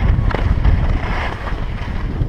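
Wind buffeting an action camera's microphone: a loud, steady low rumble with no clear tone.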